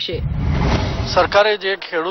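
Title-card transition sound effect of a TV news bulletin: a rushing whoosh with a deep rumble that lasts about a second and a half and cuts off, as a man starts speaking.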